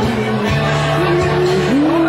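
Karaoke singing: a singer holding long notes that slide and scoop in pitch, with a short break about half a second in and a scoop up near the end, over a backing track with a steady low note beneath.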